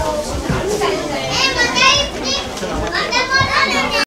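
Children's high voices chattering and calling out over the murmur of a crowd, in two excited bursts in the second half.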